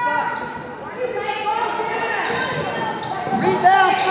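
Basketball dribbled on a hardwood gym floor, with overlapping shouts from spectators and the bench echoing in a large gym hall; the shouting grows louder near the end.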